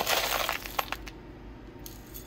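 Silver shot granules poured from a plastic tub into a plastic food cup, with a dense rattle of clinking for about the first half second. A few single clinks follow as a spoon settles the pile.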